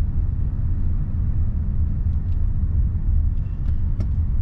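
Steady low road rumble inside a slowly moving car's cabin: tyre and engine noise.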